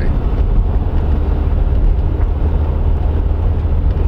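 Car cabin noise while driving: a steady low rumble of the engine and tyres on the road, heard from inside the car.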